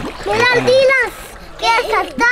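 A young child's high-pitched voice calling out over water splashing as children play in a swimming pool.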